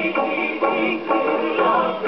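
An Eclipse 78 rpm gramophone record playing a medley of First World War music hall songs: a voice singing with a wavering pitch over instrumental accompaniment, the sound lacking its high treble.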